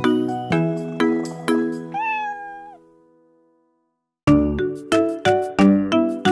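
Children's song music with evenly paced plucked notes; about two seconds in, a cartoon cat meows once. The music then dies away to a brief silence and starts again with a steady beat about four seconds in.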